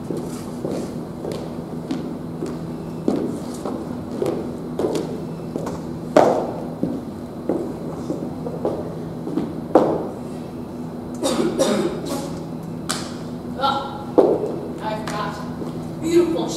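Irregular knocks and thumps on a stage floor, such as footsteps and stomps, over a low steady hum in a hall, with voices coming in near the end.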